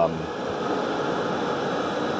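Steady whir of a running digital cinema projector's cooling fans, an even rushing noise with a faint steady tone in it.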